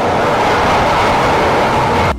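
Manila MRT Line 3 commuter train pulling into the elevated station and passing close by the platform: a steady, very noisy rush of wheels on rails and running gear with a strong mid-pitched hum.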